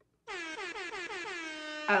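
Air-horn sound effect: one held horn blast with a dense stack of overtones, starting a moment in and dipping slightly in pitch before holding steady. It is played as the live stream's super chat alert.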